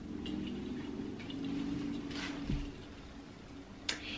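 Faint rustling of a garment and its packaging being handled and unfolded, over a steady low hum, with a soft thump about two and a half seconds in.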